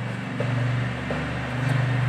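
A steady low electrical hum, with a few faint clicks and scratches of a marker writing on a whiteboard.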